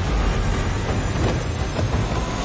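Trailer-style sound-design rumble: a loud, dense low roar that comes in suddenly, with a few faint sweeping whooshes through it, laid under the show's title card.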